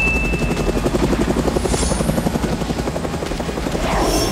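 Helicopter flying overhead, its rotor blades beating in a fast, steady chop.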